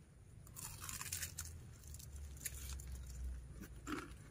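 People biting and chewing crisp battered, fried banana leaf: scattered faint crunches from about half a second in until near the end.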